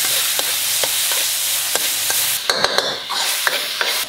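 Chicken pieces stir-frying in a wok over high heat: a loud sizzle, with a metal spatula scraping and clicking against the pan. The sizzle eases a little past halfway.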